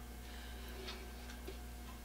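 Low, steady hum of room tone with a couple of faint ticks, one about a second in and one a little later.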